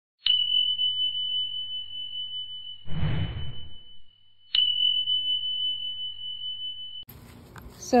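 Two electronic bell dings from an on-screen notification-bell sound effect. Each is a sharp strike followed by a steady high ring: the first rings for about four seconds, and the second starts about four and a half seconds in and cuts off abruptly about two and a half seconds later. A short noisy burst falls in the middle of the first ring, about three seconds in.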